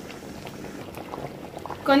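Thick masala gravy boiling in a pan, its bubbles popping in soft, irregular blips.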